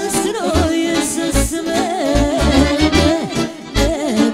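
Live Romani folk band playing: an accordion leads a wavering, ornamented melody, with violin, over a steady low keyboard-bass beat.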